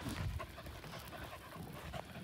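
A Portuguese Water Dog panting faintly.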